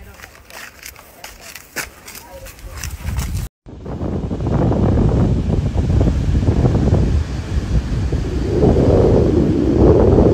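Wind rushing and buffeting over a phone microphone on a beach, with surf behind it, loud and gusting from about four seconds in. Before that, a quieter stretch with faint voices.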